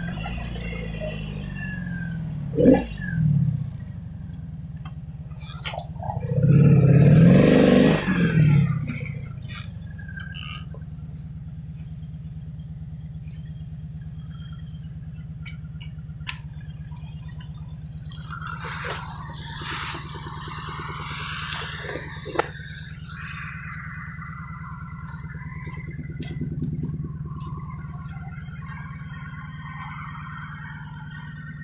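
1985 Honda Magna 700's liquid-cooled V4 engine, falling in pitch as the bike slows, then revving up and back down once, loudly, a few seconds later. After that it idles steadily, with a few sharp clicks over it.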